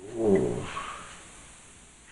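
A man's low, wordless groan, falling in pitch and lasting well under a second at the start, then fading away.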